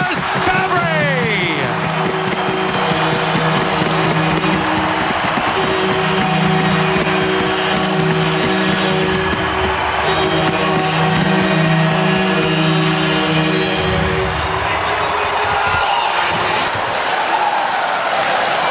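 Arena goal horn and goal music sounding in long held tones over a cheering crowd, celebrating a home goal; they stop about fourteen seconds in, leaving crowd noise.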